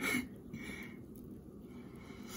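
A short, breathy puff right at the start and a fainter one about half a second later, over low room noise: a person breathing near the microphone.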